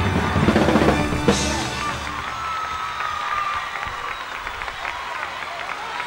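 A live band with drums plays the final bars of a rock song and ends on a cymbal crash about a second in. The band then drops out, leaving a single note ringing briefly over an arena crowd applauding and cheering, heard faintly through the soundboard feed.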